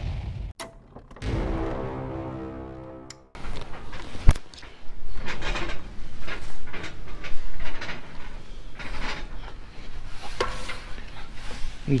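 A few seconds of intro music ending in a held chord, then a sudden cut to rustling and irregular knocks from handling inside a plastic dumpster full of black trash bags, with one sharp knock about a second after the cut.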